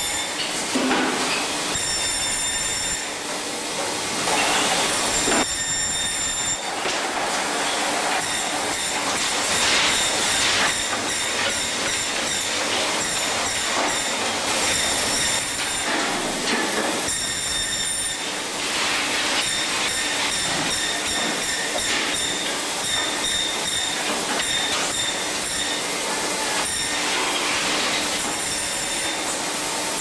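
Braher table band saw running and cutting fish. High-pitched squealing tones from the blade come and go over a steady running noise, with a few louder swells.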